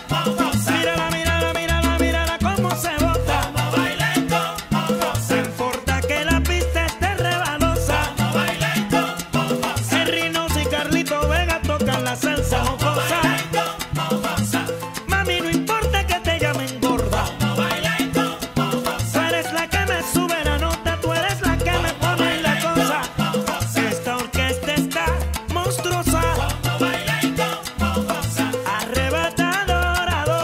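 Salsa music: a full Latin band track with a steady, pulsing bass line under the melody.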